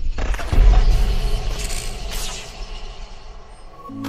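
Cinematic logo-intro sound effects: a deep booming impact about half a second in, then whooshing sweeps over a low rumble that slowly fades.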